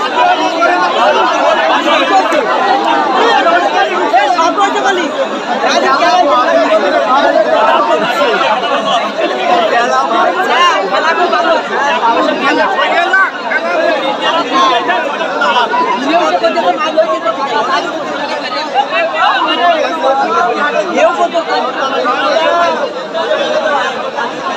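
A large crowd of spectators talking at once: a loud, steady babble of many voices with no single voice standing out.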